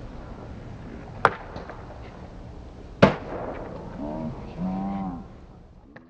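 Skateboard going down a concrete stair set: a sharp crack about a second in, then a louder slam of the board landing about three seconds in, followed by wheels rolling on concrete. Voices shout briefly after the landing.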